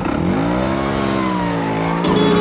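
Classic motor scooter's engine revving as it pulls away, its pitch dropping at first and then holding steady.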